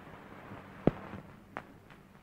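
Sharp clicks and pops over faint hiss on an old film soundtrack, at a cut between scenes. One loud pop comes about a second in, followed by two fainter ones.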